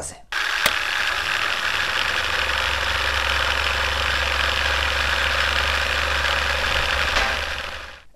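Film projector sound effect running steadily with a dense mechanical rattle and a low hum. It starts suddenly with a click and fades out near the end.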